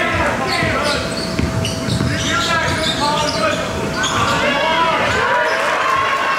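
Live basketball game sound in a gym: a ball dribbling on a hardwood court, with short squeaks of sneakers and the voices of players and spectators.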